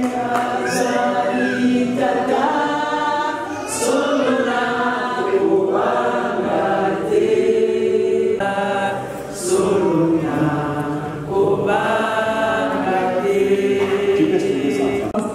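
A preacher and congregation singing a Lingala song together in long held phrases.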